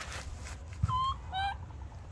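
Baby monkey giving two short squeaky calls in quick succession about a second in, the second rising in pitch at its end, just after a soft thump.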